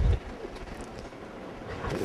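A pause in speech: the quiet, even room tone of a hall, opened by one short low thump.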